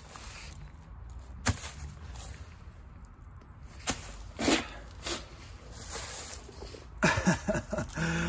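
A few sharp knocks and rustles as shoes are handled on a bed of dry leaves, over a low steady rumble. A man's voice comes in near the end.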